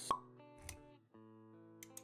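Animated-intro sound design: a sharp pop with a brief ringing tone just after the start, the loudest sound here, over soft sustained music notes. A dull low thud comes a little over half a second in, and a quick run of clicks near the end.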